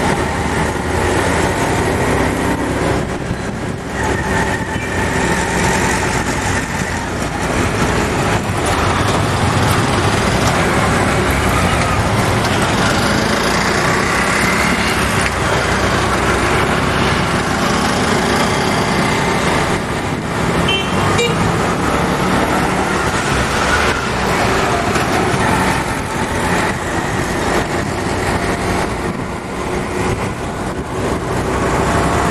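Busy road traffic: a steady din of vehicle engines and tyres, with horns sounding now and then.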